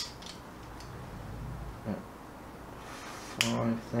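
A sharp single click from a handheld steel tape measure, followed by a couple of faint ticks, over a low steady hum.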